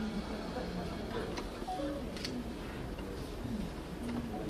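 Low murmur of voices in a hall, with a few short faint clicks or taps a second or two in; no stone-breaking impact is heard.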